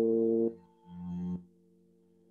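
Voice chanting a long, low, held 'om'. It ends about half a second in, a shorter hummed tone follows and cuts off sharply before one and a half seconds, and a faint steady tone lingers after it.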